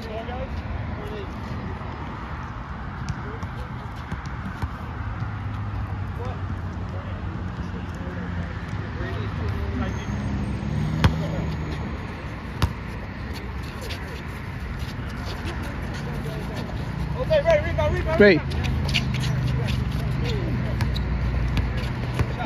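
Men's voices talking here and there over a steady low rumble, with a couple of isolated sharp knocks past the middle and a short exclamation, "Great", near the end.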